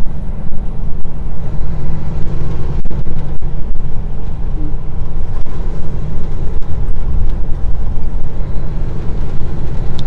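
A semi truck's diesel engine and road noise heard from inside the moving cab: a loud, steady low rumble.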